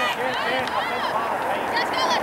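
Distant voices of players and spectators calling out across an open soccer field: several short overlapping shouts over a steady hum of chatter.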